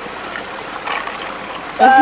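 Steady rush of running water, like a creek flowing, with a voice starting to speak near the end.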